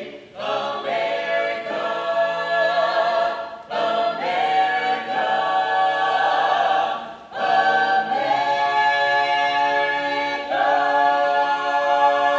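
Mixed-voice a cappella ensemble singing held chords in close harmony, in phrases broken by brief pauses, under a dome that adds reverberation to the voices.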